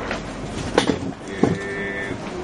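A person's voice making a drawn-out sound that is not words, held on a steady pitch near the end, with a couple of short sharp sounds before it.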